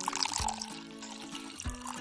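Milk pouring from a carton into a glass bowl, a thin trickle during the first half, over background music with steady held notes.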